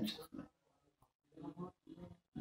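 A pause in a man's speech. A word trails off at the start, then comes near silence, then two short, faint low vocal sounds, like a grunt or a catch of breath, in the last second before he speaks again.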